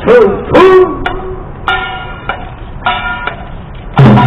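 A man's voice calls out in the first second. Then a melody instrument of the traditional Korean accompaniment plays two short held notes, the second about a second after the first.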